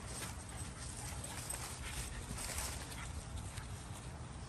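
A Nova Scotia Duck Tolling Retriever puppy and a larger dog play-wrestling on grass: soft, irregular scuffling and rustling of paws and bodies, with no clear barks.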